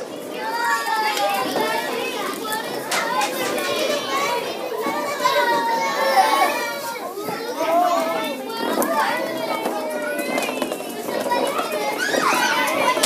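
Many children's voices talking and calling out over one another, with a few short knocks among them.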